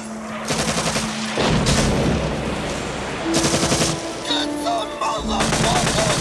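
Rapid bursts of machine-gun fire in a film battle soundtrack, heaviest after the first second and again near the end. Long held notes of the film score run under the gunfire from about halfway.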